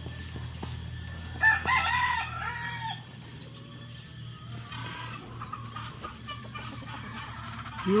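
A gamecock crows once, loud and in several rising-and-falling parts, about a second and a half in. A second, fainter crow follows about five seconds in.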